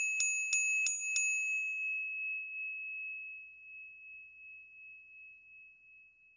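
A small bell struck five times in quick succession over about a second, its single clear tone ringing on and slowly fading away.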